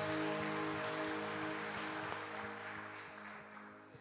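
A worship band's final chord held and fading away, along with a wash of noise that dies down with it.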